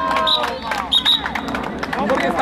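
Voices of children and spectators calling and shouting across an outdoor youth football pitch, with a few short high-pitched cries.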